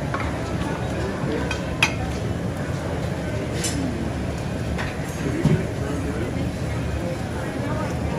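Busy buffet dining-room din: steady background crowd chatter with clinks of dishes, pans and cutlery, the sharpest clink about two seconds in.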